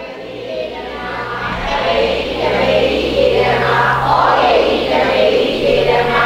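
Many voices chanting together in unison. The chant builds up over the first two seconds, then swells and falls in a regular rhythm, with a faint steady electrical hum underneath.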